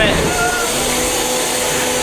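Steady whine of a combat robot's spinning beater-bar weapon, belt-driven by its motor and back up to speed, over the general clatter of the arena.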